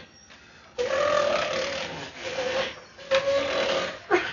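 A person's voice making a long, rough, wordless sound on one steady pitch starting about a second in, then a second shorter one near the end.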